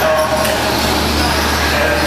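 Electric RC short-course trucks racing on an indoor clay track: a steady, loud din of motors and tyres with a constant low hum under it, and a voice heard briefly at the start.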